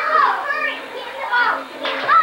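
Children's high voices shouting and calling out as they play.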